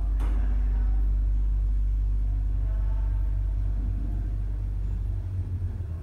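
Hyundai freight elevator car travelling up one floor: a steady, very low rumble through the car that fades out near the end as it arrives, with a sharp click just as it sets off.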